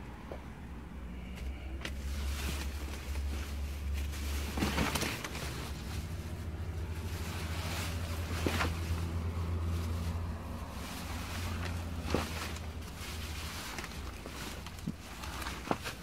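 Plastic garbage bags rustling and crinkling in a few separate bursts as they are shifted around in a dumpster, over a low rumble that fades after about eleven seconds.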